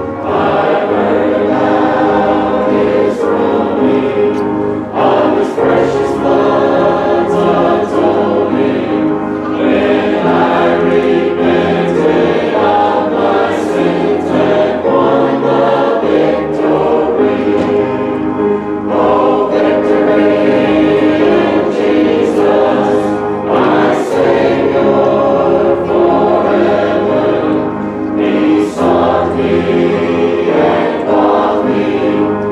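A choir singing continuously, many voices sustaining notes together.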